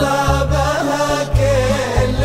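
Islamic nasheed: male voices chanting long, held notes over a deep, pulsing low beat.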